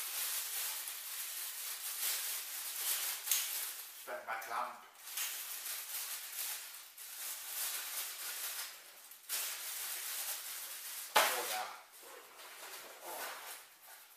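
Plastic bag crinkling and rustling as kit items are handled and pulled out of it, with a sharp knock about eleven seconds in.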